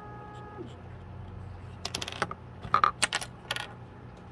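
A quick cluster of sharp clicks and light knocks, like small hard objects tapping together: a plastic glue bottle and thin laser-cut wooden kit pieces handled and set down on a wooden desk.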